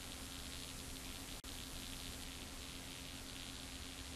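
Faint, steady hiss and low hum from a TV feed with no programme sound while channels are switched, broken by a brief dropout about a second and a half in.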